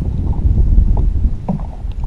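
Wind buffeting the microphone on an open boat, an uneven low rumble, with a few faint knocks.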